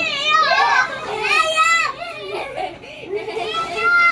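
Young children's high-pitched voices, babbling and squealing wordlessly while they play.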